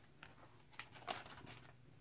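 Faint crinkling of plastic card-binder sleeves under a hand, with a few light ticks.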